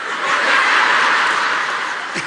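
Audience laughing, a dense wash of crowd laughter that swells about half a second in and slowly eases off.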